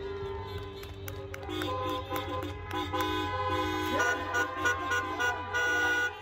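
Several car horns honking together in short repeated toots at different pitches, getting louder about one and a half seconds in.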